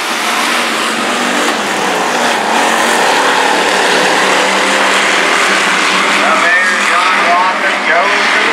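A pack of hobby stock race cars running laps on a dirt oval, their engines a loud, steady din of several cars at once.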